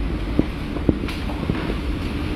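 Hurricane-force wind blowing steadily, with wind buffeting the microphone. Three brief sharp knocks stand out, about half a second apart.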